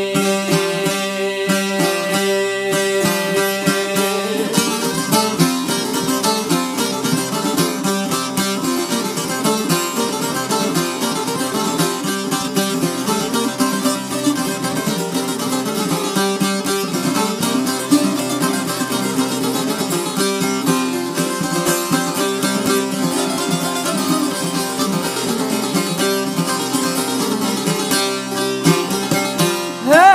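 Instrumental break of an Albanian folk song played on plucked long-necked lutes (çifteli), with fast, dense picked melody over a steady drone and no singing.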